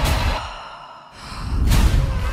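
Trailer sound design: a heavy hit at the start dies away over about a second. A breathy rising whoosh then swells into another heavy hit near the end.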